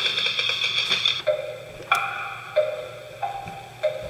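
Comic clown-act music on a film soundtrack: about a second of rapid rattling trill, then single xylophone-like mallet notes about every two-thirds of a second, stepping between a few pitches.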